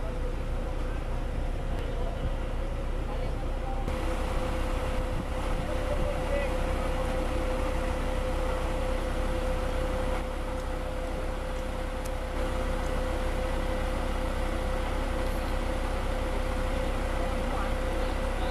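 Concrete boom pump truck running steadily at work: a deep diesel engine drone with a constant high hum over it.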